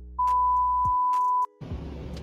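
A steady single-pitch censor bleep, a little over a second long, that cuts off suddenly, masking a word in a spoken meme clip.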